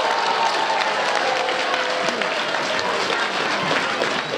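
Audience clapping steadily, with a voice or two faintly held over the applause.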